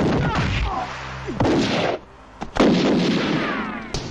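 Film gunfight sound effects: heavy gunfire mixed with crashing, in two loud stretches split by a short lull about two seconds in.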